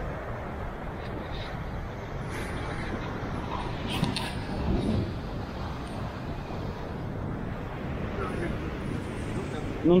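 Beach ambience: a steady rush of surf and wind noise, with faint voices briefly about halfway through.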